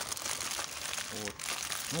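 Plastic packaging crinkling and rustling as it is handled, a close, continuous crackly rustle that pauses briefly around the middle.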